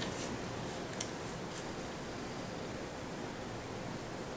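Bone folder drawn along the groove of a scoring board, pressing a score line into cardstock: faint scraping with a light click about a second in, over a steady hiss.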